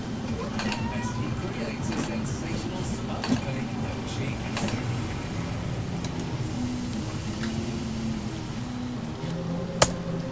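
3D printer stepper motors whining in short tones that jump from pitch to pitch as the print head moves, plainest from about six seconds in, over a low steady hum. One sharp click comes just before the end.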